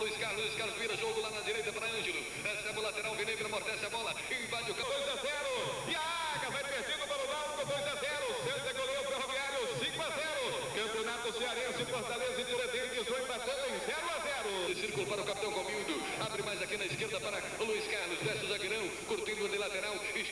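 A man's rapid football play-by-play commentary, running without pause.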